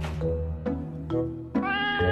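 A cat meowing once near the end, one held call, over background music.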